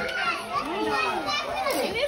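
Several children's voices chattering and calling out over one another, with some talk mixed in.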